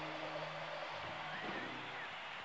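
A large stadium crowd cheering at the end of a rock concert, over a low held note from the stage that stops about a second in.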